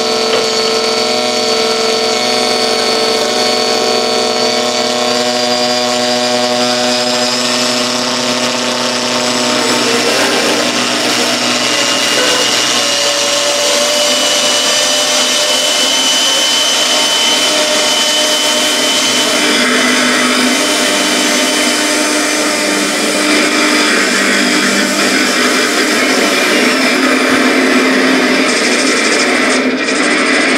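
Experimental noise music played on a homemade instrument built from a car headlight housing fitted with metal rods: a dense, steady drone of many sustained tones. A high tone rises slowly over the first several seconds, and the texture turns harsher and noisier from about ten seconds in.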